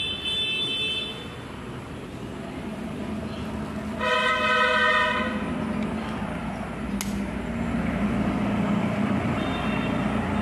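A steady, horn-like pitched tone sounds once, about four seconds in, for about a second, over a constant low background rumble. A fainter high tone fades out in the first second, and a single sharp click comes near the end.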